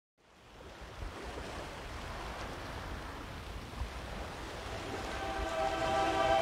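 A rushing, surf-like wash of noise fades in at the start and runs steadily. A held musical chord swells in over it near the end, the start of the soundtrack.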